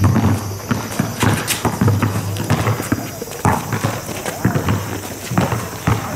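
Basketball being dribbled on an outdoor asphalt court, mixed with sneaker footsteps. It makes a run of irregular thuds, a few each second.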